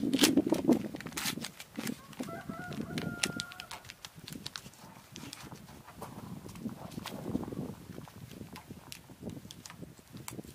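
Scattered light knocks and clicks of a wooden board and block being handled and held against a plank wall, with a louder rubbing noise in the first second. A brief pitched call or squeak sounds about two to three and a half seconds in.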